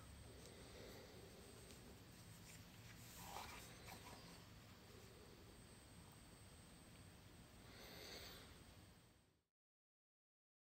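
Near silence: faint room tone with two brief soft noises, about three seconds in and near the end, then the sound cuts to dead silence.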